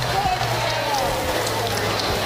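Race car engines running in the distance, with a steady low hum underneath.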